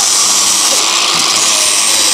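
Cordless power tool running steadily at high speed with a high-pitched hiss as it bores into a plywood panel, making the holes for the shaft bearings.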